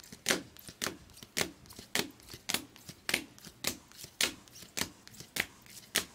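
Baseball cards flicked one at a time from the front of a hand-held stack to the back, each giving a short, sharp snap, about two a second.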